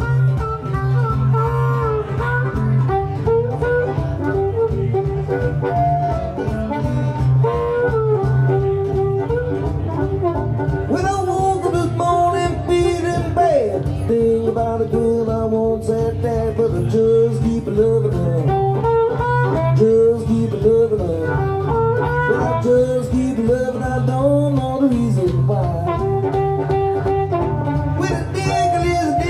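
Blues harmonica playing a solo with bent, wavering notes over a steady guitar rhythm.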